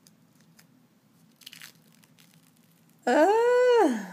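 Faint crinkling and small clicks as a dried peel-off clay mask is pulled from the skin of the face. About three seconds in comes a woman's loud, drawn-out vocal exclamation, under a second long, that rises and then falls in pitch.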